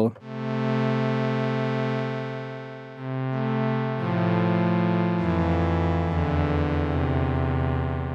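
OB-Xd software synthesizer playing a warm pad preset, with sustained chords held for a few seconds each. The first chord fades, a new chord comes in about three seconds in, and more notes and a low bass note join near four and five seconds. The sound runs through Valhalla Plate reverb, whose mix is being turned up from none to about 30%.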